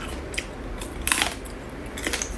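Close-up eating sounds of a cooked hermit crab leg being bitten: a few short, crisp cracks and crunches of shell, the loudest cluster a little past the middle.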